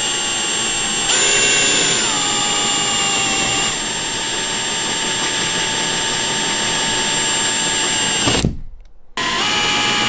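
Milwaukee M18 cordless drill running at speed, its bit boring a hole through a bedliner-coated truck cap. The motor's whine shifts in pitch over the first few seconds as the bit loads, then it stops about eight and a half seconds in and starts again under a second later.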